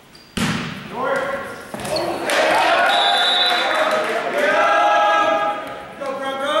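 A volleyball struck hard, a sharp smack about half a second in that echoes around the gym, followed by a couple of lighter thuds. Then loud shouting and cheering from players and spectators as the point is won.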